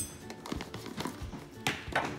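A few light taps and knocks from a spoon and a sweetener carton being handled over a stainless steel mixing bowl, the sharpest tap near the end.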